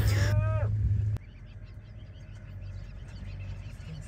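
Safari vehicle engine idling with a steady low hum that cuts off abruptly a little over a second in. After that come faint, scattered bird chirps over the quiet of open grassland.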